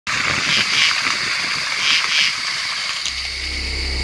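Night-time nature ambience: a steady high chirring of night creatures that swells a few times. About three seconds in, a deep, steady low drone joins it.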